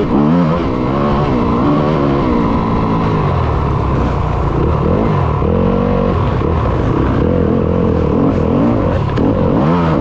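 Yamaha YZ250FX dirt bike's 250 cc single-cylinder four-stroke engine being ridden hard, its revs rising and falling every second or so through throttle and gear changes.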